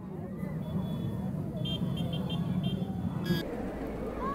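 A column of parade-escort motorcycles passing at low speed, their engines running in a steady low drone. A run of short high beeps sounds around the middle, and a short sharp toot about three seconds in.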